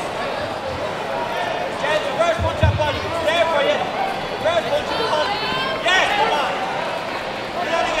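Shouting voices calling out over the background hum of a busy sports hall during a kickboxing bout. A couple of low thumps come about two and a half seconds in.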